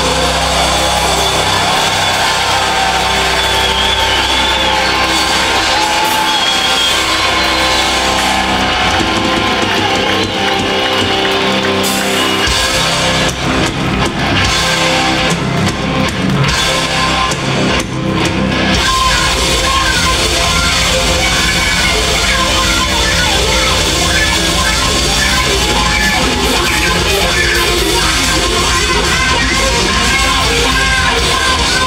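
Melodic death metal band playing live at full volume: distorted electric guitars, bass guitar and drum kit, heard from the crowd. The music changes section about two-thirds of the way through.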